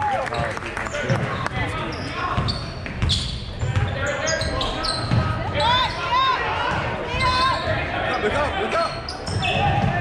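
Basketball game in a gym: the ball bouncing on the hardwood court and sneakers squeaking in short bursts, over crowd voices echoing in the hall.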